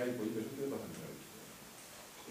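A man speaking Greek through a microphone for about the first second, then a pause with faint room noise.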